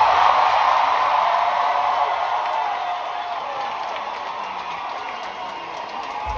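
Large concert audience cheering and applauding at the end of a song, with a few drawn-out shouts over the clapping. The noise is loudest at the start and fades steadily.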